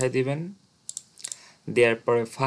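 Two or three short, light computer mouse clicks in a brief gap between a man's speech, made as boxes are unticked in a software installer.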